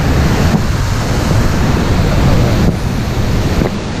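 Fast creek water rushing over rapids, with wind buffeting the microphone.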